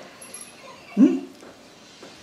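A single short vocal sound, rising in pitch, about a second in, in an otherwise quiet room.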